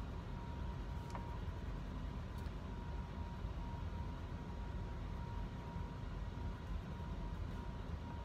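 Home furnace running, a steady low rumble with a faint steady whine over it, a little loud.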